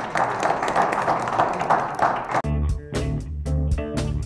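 Audience applauding in a hall, cut off suddenly about two and a half seconds in by guitar-and-bass closing music.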